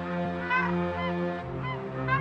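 Flock of flamingos calling in flight: repeated short honks, each rising and falling in pitch, several a second. Under them runs background music, a steady low drone whose chord changes about one and a half seconds in.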